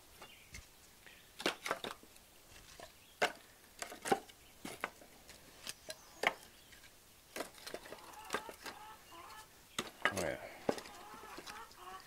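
Split kindling sticks clacking and knocking against each other as they are set one at a time into a wooden firewood bundler: a string of sharp, irregularly spaced knocks.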